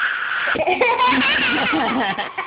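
Aerosol can of whipped cream spraying with a short hiss for about half a second, then a small child laughing in wavering giggles.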